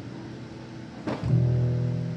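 Grand piano played live: a held chord fades away, then a new low chord is struck about a second in and rings on.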